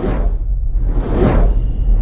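Logo-intro sound effects: two whooshes about a second apart over a deep, steady rumble.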